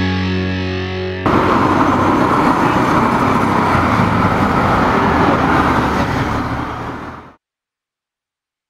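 A rock band's last chord, with electric guitar, ringing out. It is cut off suddenly about a second in by the steady rushing noise of road traffic, which itself stops abruptly near the end.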